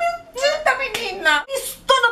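A person's voice sliding up and down in pitch, with a sharp clap about a second in.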